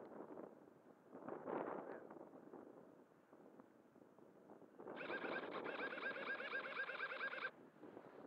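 Wind buffeting the microphone, then about five seconds in a rapid, warbling trill lasting about two and a half seconds that starts and stops abruptly, an animal call.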